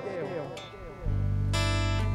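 Acoustic guitar and electric bass playing a soft, sustained worship chord. The earlier notes fade out, and a new chord with a deep bass note comes in about a second in.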